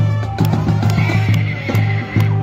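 Marching band playing: drum strokes on a steady beat about twice a second under sustained low brass notes.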